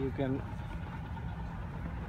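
A short bit of a man's voice right at the start, then a steady low rumble.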